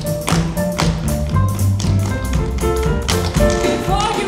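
Tap shoes striking the stage floor in quick, rhythmic strokes as several dancers tap in unison, over a pop song's backing music.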